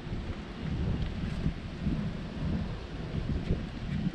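Wind buffeting the camera's microphone outdoors, a low, uneven rumble with no distinct events.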